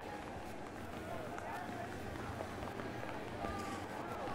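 Game sound from a football stadium: a steady haze of background noise with faint, indistinct voices calling out.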